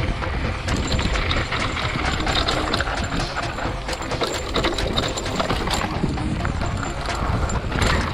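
Hardtail e-mountain bike rolling fast downhill over loose gravel: tyres crunching, with a constant clatter of small knocks and rattles from the bike over the bumps and a heavy low rumble of wind on the handlebar camera.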